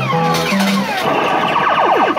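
Party Time £5 fruit machine's electronic sound effects as its reels spin and stop: a few short steady tones stepping up in pitch, then from about a second in a rapid run of falling-pitch sweeps, several a second.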